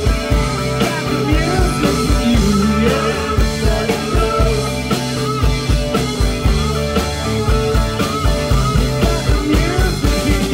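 Live rock band playing: two electric guitars over a steady drum beat, with bending lead guitar lines.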